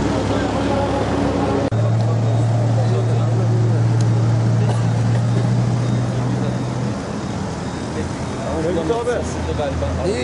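A vehicle engine idling with a steady low hum under indistinct talking of people nearby; the hum cuts off about seven seconds in.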